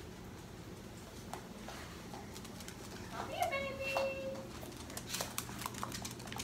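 Mostly a quiet room. About halfway through comes one drawn-out vocal sound, a short rise and then a held note, and near the end a few light taps.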